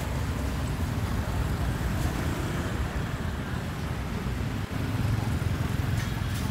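Busy street traffic: cars and motor scooters passing close by, a steady low rumble of engines and tyres that swells a little about five seconds in.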